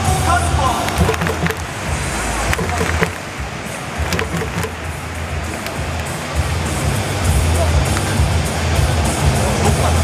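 Music with a heavy, pulsing bass playing over a ballpark's public-address system, under the steady murmur of voices in the stands.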